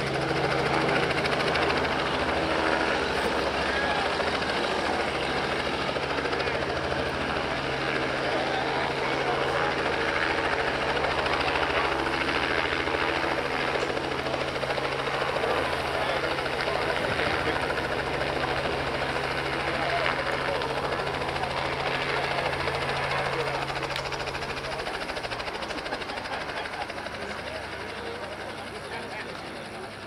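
Small helicopter hovering, a steady engine and rotor drone under people's voices; the drone stops about 25 seconds in and the sound grows quieter.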